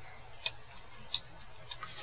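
A quiet pause in speech: low steady room hum with three faint, sharp clicks, a little over half a second apart.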